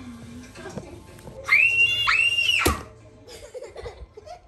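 Two high-pitched screams back to back, starting about a second and a half in and cutting off abruptly after about a second.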